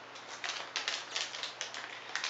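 Plastic Ziploc bag crinkling as it is handled: a quick, uneven run of small crackles.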